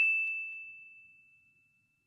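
An editing sound effect: one high, bell-like ding ringing out and fading away by about a second in.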